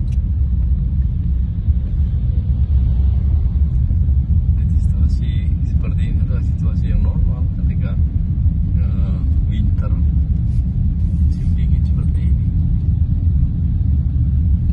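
Steady low rumble of a car driving, heard from inside the cabin: engine and tyres on a wet, slushy road. Faint voices come through quietly a few times midway.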